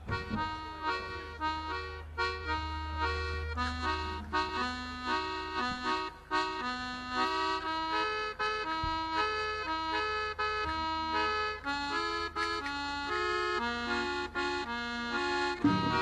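Accordion playing a quick melody of short notes, over a low steady hum in the first half. Just before the end, a fuller, louder accompaniment with low notes comes in.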